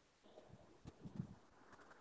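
Near silence: room tone over a video-call microphone, with a few faint soft low thumps around the middle.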